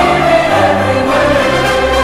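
Choir singing with orchestral accompaniment, a long held note that slides slightly lower over a steady bass line.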